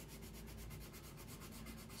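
Faint rubbing of a red watercolor pencil shading on drawing paper.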